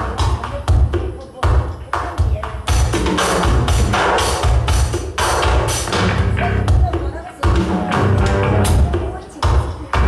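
Live progressive-rock band playing loud: two drum kits hitting hard over deep bass lines from a Chapman Stick and a touch guitar, with brief drops in the drumming a few times.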